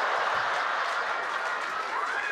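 Studio audience applauding and laughing, a dense steady wash of clapping that eases slightly toward the end.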